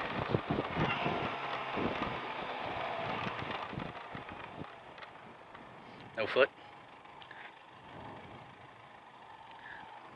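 Benelli TRK 502 motorcycle's parallel-twin engine and wind noise fading steadily as the bike slows down to a crawl in traffic, leaving only a faint low engine sound.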